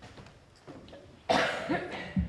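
A man coughs once into a handheld microphone held close to his mouth, a loud short cough a little past halfway through, with faint microphone handling clicks before it.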